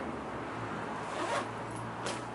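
A bag zipper pulled in one quick stroke, a short rising zip about a second in.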